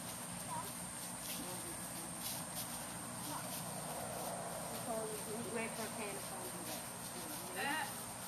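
Faint, indistinct talk, more of it in the second half, over a steady outdoor background noise.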